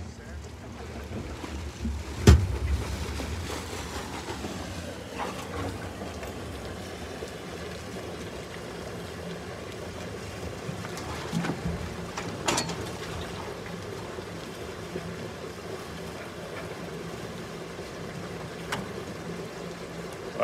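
Water and fish rushing down a hatchery release pipe from the truck's tank and pouring into the lake, a steady wash of water. There is a sharp knock about two seconds in.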